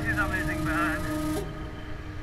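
A singing voice with a wavering pitch over the low running noise of a motorcycle. A high hiss cuts off abruptly a little past the middle.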